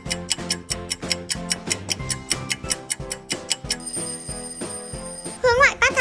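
Quiz countdown timer music: a clock ticking about four times a second over a light plucked tune. The ticking stops and gives way to a steady high ringing tone as time runs out. Near the end a loud, high-pitched voice cuts in.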